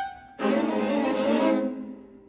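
String quartet playing: a held chord breaks off, then a loud chord attacked sharply about half a second in sounds for about a second and fades away.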